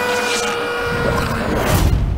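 Trailer score sound design: a single held note, steady in pitch, lasting about a second and a half, while a low rumble swells underneath and ends in a deep hit near the end.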